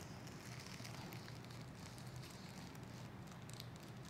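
Quiet room tone with faint scratching and crinkling of thin tissue paper as a line is drawn on it along a ruler.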